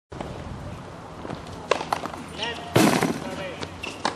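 Outdoor tennis court ambience: a few sharp knocks, the kind a tennis ball makes on a hard court or racket, with faint spectators' voices. A louder rush of noise a little under three seconds in is the loudest moment.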